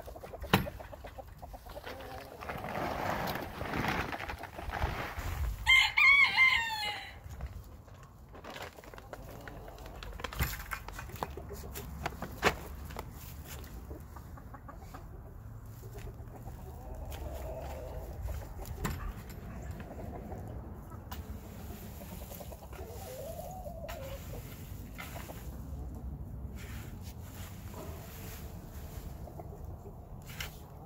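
A rooster crows once, about six seconds in, the loudest sound here; chickens cluck softly later on. Scattered clicks and rustling from handling in the chicken run run underneath.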